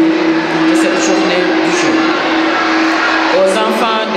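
Indistinct voices in a large, echoing hall over a steady low hum, with a burst of talk near the end.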